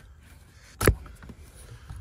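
A single sharp plastic click a little under a second in: a wiring connector unlatching and coming off the back of the Audi S4's climate control unit.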